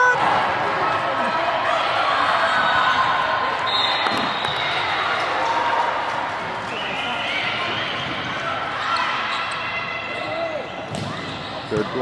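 Indoor volleyball rally in a gym: a busy mix of players and spectators calling out, with a few sharp thuds of the ball being hit.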